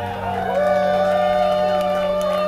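Live rock band holding a long final chord over a steady low drone, with lead notes bending up and down in pitch.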